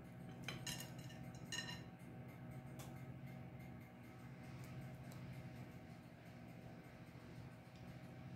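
Faint kitchen handling sounds: a few light clinks and taps in the first three seconds as pineapple slices are lifted from a plate and laid into a cast-iron skillet, over a steady low hum.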